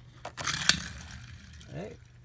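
Hot Wheels die-cast toy car pushed off by hand and rolling across a wooden floor: a clatter about half a second in as it is launched, then a rolling rumble that fades as the car travels away.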